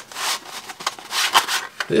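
Kraft paperboard pillow box being squeezed open by hand, the cardboard rubbing and scraping in a few rough swells.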